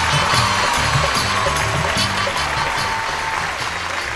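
Studio audience applauding and cheering over loud entrance music with a steady bass beat.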